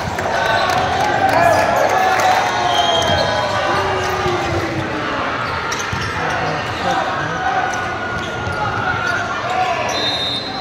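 Echoing sports-hall ambience at a volleyball match: overlapping voices and shouts of players and spectators, with scattered thuds of balls bouncing on the wooden floor and a few short high squeaks.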